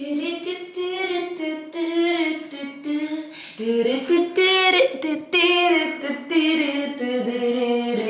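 A woman singing unaccompanied, a melody in long held notes with glides between them.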